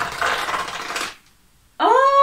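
Cardboard rustling and scraping for about a second as a long compartment of a cardboard advent calendar is pulled open, then it stops.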